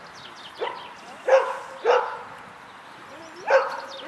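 A dog barking: four short single barks, the first weaker and the others loud.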